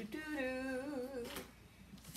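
A woman humming a short, wavering phrase, about a second and a half long, then stopping.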